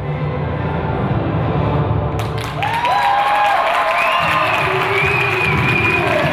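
Music for a synchronized skating program. About two seconds in, audience applause and cheering break out over it as the routine ends and the skaters bow.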